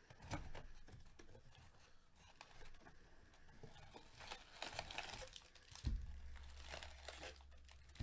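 Faint crinkling and tearing of a cardboard hobby box and its foil-wrapped trading-card packs being opened and handled, with a sharp thump about six seconds in.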